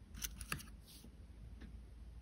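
Plastic MacBook arrow keycap being slid off its scissor-mechanism clip: two faint, short plastic clicks about a quarter of a second apart, within the first half second.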